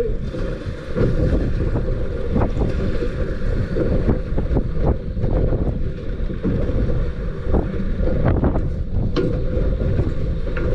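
Wind buffeting the microphone over choppy water slapping and splashing against a small boat's hull, with occasional sharper slaps.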